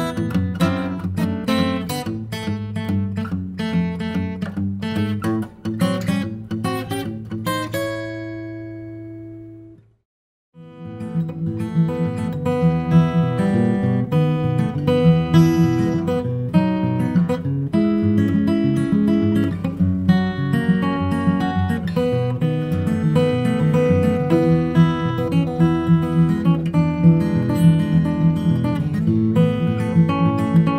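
Martin D-41 dreadnought acoustic guitar (Sitka spruce top, East Indian rosewood back and sides) played with hybrid picking, ending on a chord that rings and fades out about eight seconds in. After a brief silence it is played fingerstyle for the rest of the time. The sound is the dry, unprocessed guitar, with no EQ or compression.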